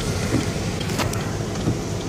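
Car interior while driving in heavy rain: a steady rush of engine, wet-tyre and rain noise, with the windscreen wipers sweeping and a short click about a second in.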